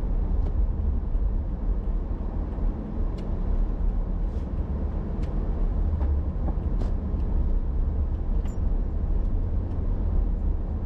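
Car driving on city streets, heard inside the cabin: a steady low road and engine rumble, with a few faint light ticks.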